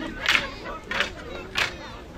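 Chuukese stick dance: the dancers' wooden sticks strike together in a steady beat, three strikes in two seconds, with the men shouting in time.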